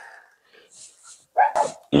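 A dog barking briefly, about one and a half seconds in, after a quiet start.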